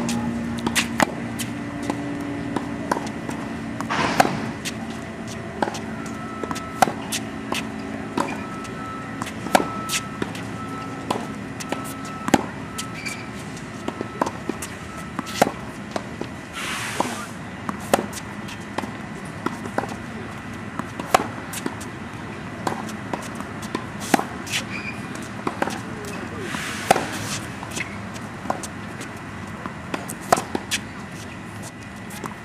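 Tennis balls struck by rackets and bouncing on a hard court during a rally: a string of sharp pops, roughly one every second, with a few longer scraping hisses in between.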